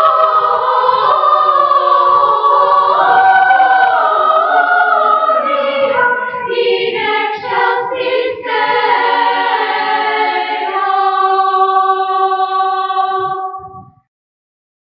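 Children's choir singing from an old cassette recording, the voices moving through a phrase and settling on a long held final chord from about eleven seconds in, which fades away at the close.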